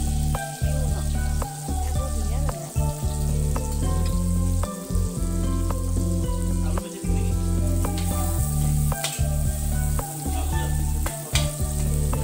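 Food sizzling as it fries in oil in a large metal kadai over a wood fire, with a metal ladle stirring and now and then clinking against the pan.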